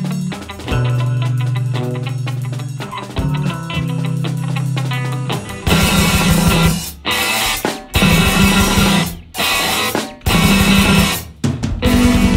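Instrumental math rock from a guitar, bass and drums trio. Held low notes ring for about the first half. Then the full band plays loud stabs with drums and cymbals, about a second each, stopping dead between them.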